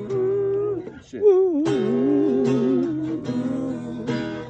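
Acoustic guitar strummed while a voice sings long, wavering held notes over it, breaking off briefly about a second in.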